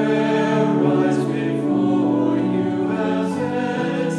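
A choir singing a slow hymn in long held notes, the pitch changing every second or two, with sung consonants audible.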